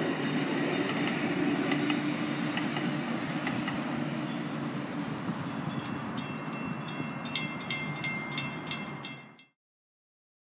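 DART light-rail train passing a grade crossing, its wheels clicking over the rails as its rumble slowly fades, with the crossing bell ringing in regular strikes. The sound cuts off suddenly about nine and a half seconds in.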